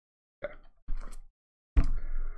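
Three short, soft noises close to a desk microphone, with dead silence between them: small mouth and breath sounds, the last and loudest with a low bump as a man rests his chin on his hand.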